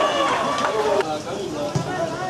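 Several voices shouting on a football pitch, loudest in the first second, then dropping abruptly to quieter voices.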